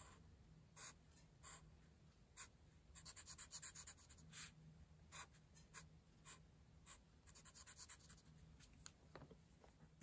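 Near silence with faint scratches of a Sharpie permanent marker on paper as small areas are filled in with short strokes, a quick run of strokes about three seconds in.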